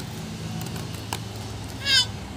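A short, high-pitched, wavering squeal near the end, over a steady low hum.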